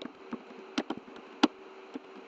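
Computer keyboard typing: a few sharp, separate keystrokes over a faint steady hum.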